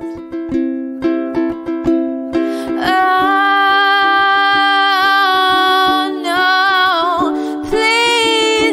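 Live acoustic song: quick strummed chords on a small acoustic string instrument, then from about three seconds in a long held melodic note that wavers and bends over the strumming.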